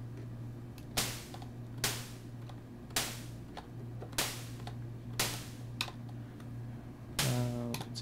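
Short white-noise bursts from a Behringer Neutron synthesizer's noise generator, shaped by a very percussive, fast-decaying envelope: six sharp hits, roughly one a second, over a steady low hum. Each burst is an impulse for making a small-room impulse response.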